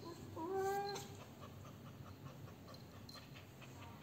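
Female cat in heat giving one drawn-out call, about a second long near the start, rising in pitch as it begins and then held steady.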